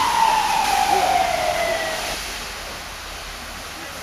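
An emergency vehicle's siren winding down: one long tone falling steadily in pitch, stopping about two seconds in.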